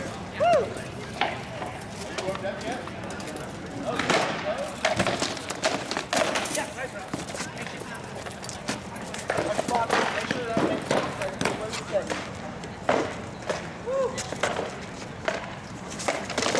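Swords striking shields and helmets in a bout of armoured combat: irregular sharp knocks, several in quick succession about four to six seconds in and again around ten to thirteen seconds. Crowd chatter runs beneath.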